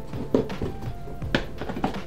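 Handling of the reel's cardboard box and its paper inserts: a few sharp knocks and thunks as the box and leaflets are moved about.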